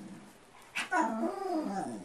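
A dog 'talking': a drawn-out, wavering whining vocalization that starts a little under a second in and bends up and down in pitch.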